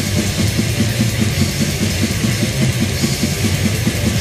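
Crust punk band playing an instrumental passage: a fast, even drumbeat under distorted guitar and bass, with no vocals.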